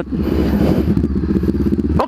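Honda CB500X's parallel-twin engine running at steady revs while riding onto a broken road surface, with a rush of road and wind noise over it.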